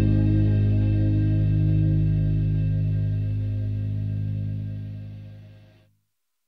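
Closing chord of a rock song, held and slowly fading away, dying out just before the end.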